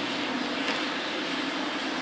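Steady underwater noise picked up by a submerged camera: an even rushing hiss over a constant low hum, with no pauses.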